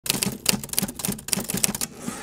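Typewriter keys clacking in a quick, slightly uneven run of about five strokes a second, the sound effect for title text being typed onto the screen.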